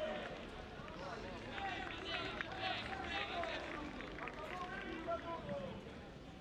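Distant voices calling out across a football pitch, over low crowd noise.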